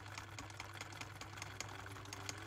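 Faint sewing machine stitching: a quick, even run of needle clicks over a low motor hum.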